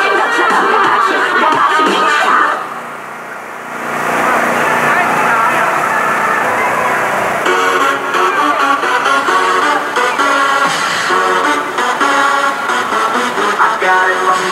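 Loud amplified dance music playing over a sound system for a pole dance. It drops away briefly about three seconds in, then comes back with a steady, regular beat from about halfway through.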